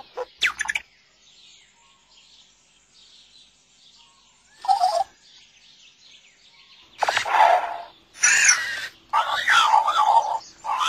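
Electronic chirping robot voice of a Roboquad toy, speaking in short bursts of warbling, sliding tones: one near 5 s, then three close together from about 7 s to the end. Faint high twittering fills the quiet stretch before them.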